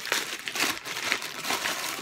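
A plastic poly mailer bag crinkling as it is handled and pulled open by hand, an irregular run of crackles.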